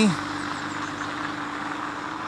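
A steady engine hum from a motor vehicle running nearby, one constant tone over even background noise.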